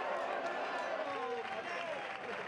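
Football crowd voices: many spectators shouting and cheering at once in celebration of a goal.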